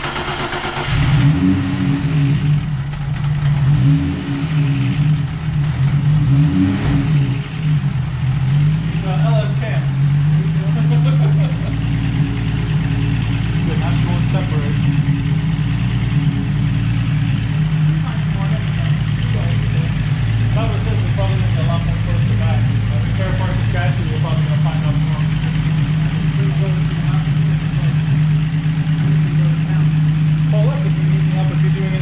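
Turbocharged 24-valve VR6 engine in an Audi S4, freshly started, with its idle speed wavering up and down for about the first twelve seconds. It then settles into a steady idle.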